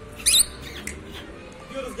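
A rosy-faced lovebird gives one short, shrill, wavering chirp about a quarter of a second in.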